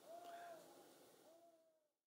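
Near silence, with two faint hoot-like tones that each rise and then fall over about half a second. The sound cuts out completely near the end.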